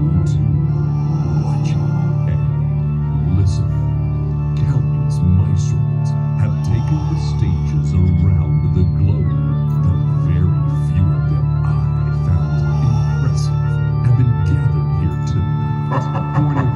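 Sustained organ-like synthesizer chords over a steady low drone, played through loudspeakers by a marching band's front ensemble. Scattered short high strikes sound over the held chords.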